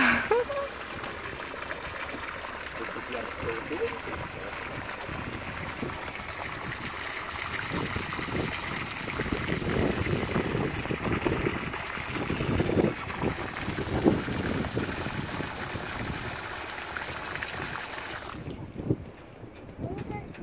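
Outdoor wind and water noise on the microphone, gusting louder in the middle, with people laughing about four seconds in. The noise cuts off suddenly near the end.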